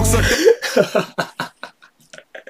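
A hip-hop track stops abruptly a moment in. A man then laughs in a quick run of short bursts that grow fainter.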